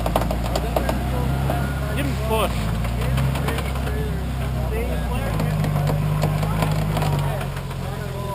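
Jeep Wrangler engine running at a low steady speed, picking up a little about five seconds in and settling back near the end.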